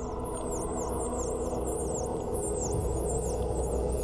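Many high-pitched dolphin whistles, sweeping down and back up in pitch and overlapping several times a second, over a low, steady ambient music drone.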